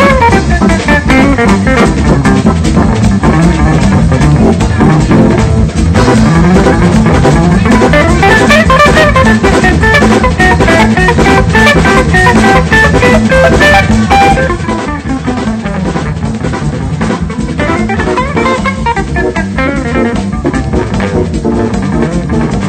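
Jazz recording with guitar, drum kit and bass playing together; the music drops to a quieter passage about two-thirds of the way through.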